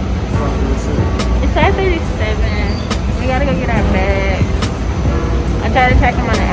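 A steady deep rumble, with a person's voice that rises and falls in long gliding lines, like singing, heard several times over it.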